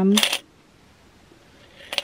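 Coins jingling briefly inside a small wooden coin bank as it is lifted and tilted, then quiet.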